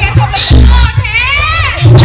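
A performer's high-pitched voice shouting through a stage PA, one drawn-out cry that rises and then falls in pitch, over deep thuds.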